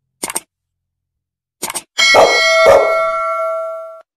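Subscribe-button animation sound effects: a short click, then a quick double click, then two sharp hits half a second apart over a ringing chime that fades away.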